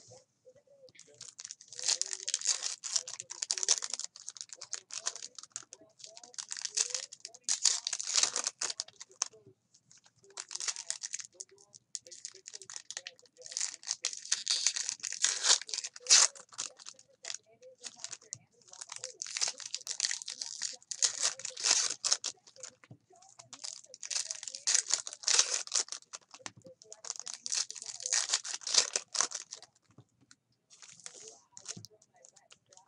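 Foil wrappers of Bowman Chrome baseball card packs being torn open and crinkled by hand. The crackling comes in about seven bursts, each a few seconds long, with short breaks between.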